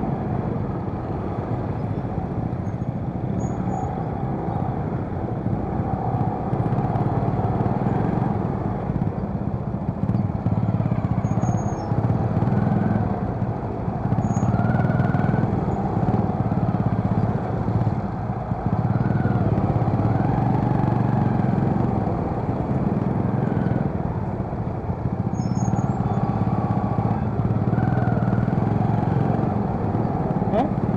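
Scooter and surrounding motorcycle engines in slow, stop-and-go traffic: a steady low engine hum under general street traffic noise, with a few short higher tones now and then.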